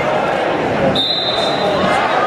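A referee's whistle blown once, a single high steady tone of about a second starting halfway through, over crowd chatter and thuds in a gym.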